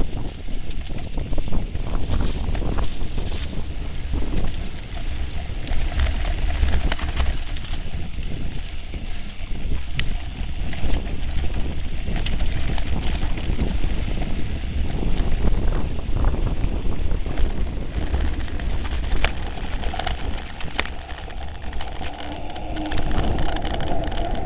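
Wind noise on the microphone of a camera moving along a dirt mountain-bike trail: a steady low rumble with frequent small knocks and rattles from the rough ground.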